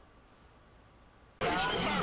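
Faint room tone, then about one and a half seconds in, a sudden cut to loud outdoor paintball-game audio: raised voices calling out over field noise.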